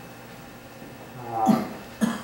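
Room tone, then about a second and a half in a brief pitched vocal sound, a short hesitation noise from a man's voice between sentences.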